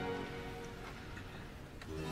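The last chord of a baroque string ensemble dies away in reverberation, then a quiet pause of room tone with a couple of faint ticks.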